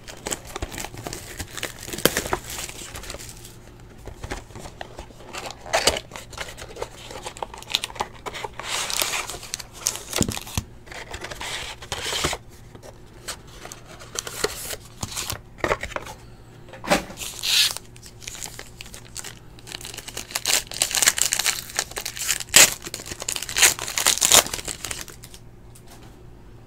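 Plastic wrapping and foil being torn open and crinkled on a sealed box of Panini Preferred trading cards, with cardboard and cards rustling and tapping as they are handled. The crinkling is densest near the end.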